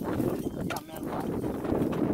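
A wooden-handled digging tool striking hard, dry soil while a fence-post hole is dug, a few sharp knocks.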